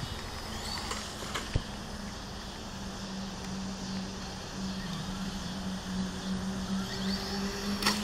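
Traxxas Slash 4x4 electric RC truck running at a distance on pavement: a steady low hum over a faint haze of noise, with a single click about a second and a half in and a higher tone joining for a while in the second half.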